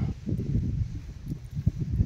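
Low, irregular rumble of wind buffeting the microphone outdoors.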